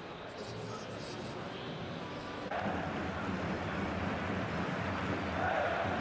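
Football stadium ambience: a steady background of noise with distant voices and shouts, a little louder and fuller from about two and a half seconds in.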